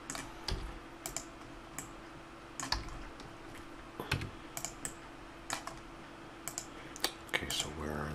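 Computer keyboard keys and mouse buttons clicking at irregular intervals, a dozen or so sharp clicks over a faint steady hum.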